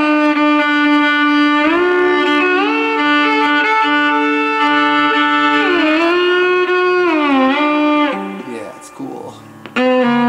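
Solo violin, bowed in long sustained notes that slide smoothly from one pitch to the next. About eight seconds in it drops much quieter for a moment before a loud note comes back in near the end.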